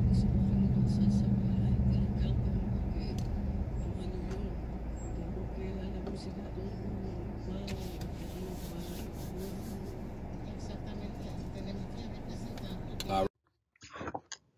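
Car engine idling, heard from inside the car: a steady low hum that slowly fades and then cuts off suddenly near the end.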